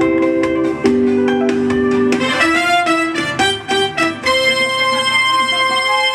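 Yamaha Motif XF6 synthesizer played with a guitar voice, a solo line in a run of changing notes that settles about four seconds in on a held C major chord.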